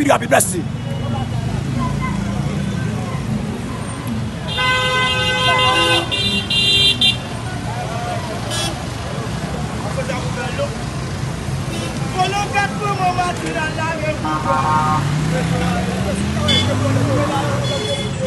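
Street traffic noise with background voices, and a vehicle horn held for about a second and a half about four and a half seconds in, with a shorter, fainter honk later on.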